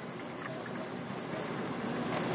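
Chicken stock being poured from a measuring cup into a hot cast-iron Dutch oven of beans and vegetables: a steady splashing hiss that grows slowly louder.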